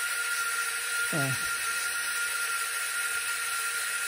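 Electric lift motors of a 1/12-scale HG P805 Patriot launcher model running steadily with a thin high whir and a fixed tone, slowly raising the heavy missile tube box and antenna under load.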